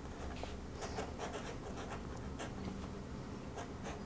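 Fountain pen nib scratching across sketchbook paper in a series of short strokes.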